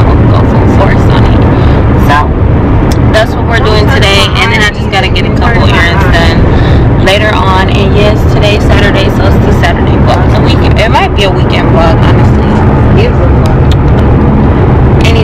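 A woman talking inside a car's cabin, over the steady low rumble of the car on the road.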